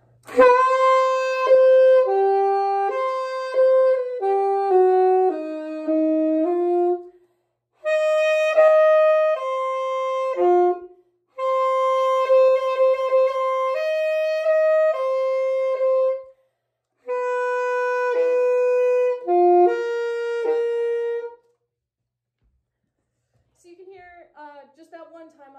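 Yamaha YAS-62 alto saxophone playing a slow phrase of long held notes out of time, in four breaths, with the notes that allow it sounded as overtones (harmonics fingered from the low notes) to fill out and steady the tone. It stops about two and a half seconds before the end.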